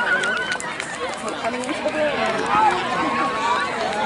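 A crowd of spectators and children talking and calling out together, many voices overlapping.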